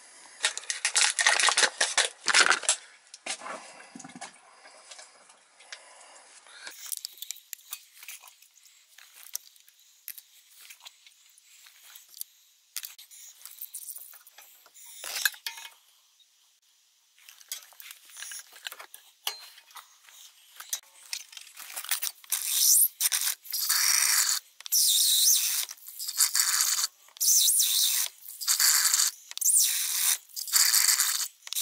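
Water being poured into an air handler's secondary drain pan, splashing in pulses about once a second from about two-thirds of the way in, to test that the pan drains. Before that, faint handling and rustling noise, with a louder noisy burst at the start.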